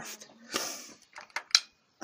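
Light handling noise in a car's engine bay: a short rustle about half a second in, then a few small sharp metallic clicks.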